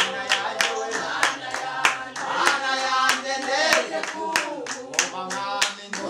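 A group of men and women singing a worship song together, keeping time with steady hand clapping at about three claps a second.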